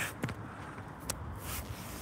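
Outdoor background noise: a low steady rumble, with a couple of short clicks just after the start and another about a second in.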